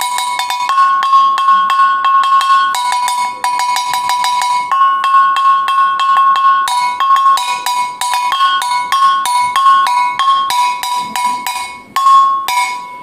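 Twin iron gong struck rapidly with a stick, a fast run of ringing metallic clangs. The strokes alternate between the two bells' slightly different pitches, in stretches of a couple of seconds and switching faster near the end.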